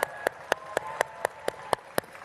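One person's hand claps, steady and even at about four a second, with faint audience applause behind.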